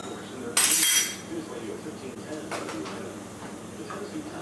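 A metal spoon scraped once across the rim of a small can, a short rasp about half a second in, followed later by faint light clinks of the spoon and can.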